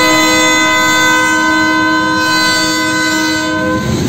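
Air horn of a KCSM EMD GP38-2 locomotive holding one long, steady chord that cuts off shortly before the end. Underneath it is the rumble and clatter of the passing freight train on the rails.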